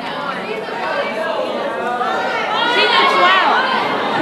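An audience talking over one another, a hubbub of many overlapping voices that grows louder as it goes.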